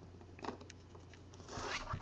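A trading card being handled and slid into a hard plastic card case: a few light clicks, then a short scratchy slide near the end.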